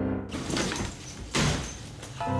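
Two rushing noise swells, the second starting suddenly and louder, then fading: a sound effect for a ghost-sucking vacuum pulling a ghost in.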